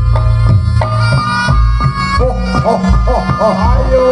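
Live Reog Ponorogo gamelan music: a reedy slompret shawm playing a wavering, bending melody over kendang drums and deep gong strokes.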